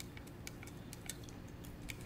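Faint clicks of a prototype Android phone's keyboard keys pressed one at a time as a word is typed, about half a dozen irregular clicks over a low steady hum.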